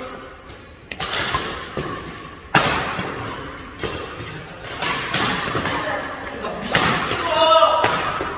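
Badminton rally: sharp smacks of rackets hitting a shuttlecock at irregular intervals, about seven in all, with the thuds of players' footwork on the court in a large hall.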